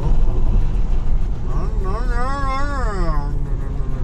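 Steady low road and tyre rumble inside a Tesla's cabin at motorway speed, with a person's drawn-out, wavering vocal sound about two seconds in, lasting about a second and a half.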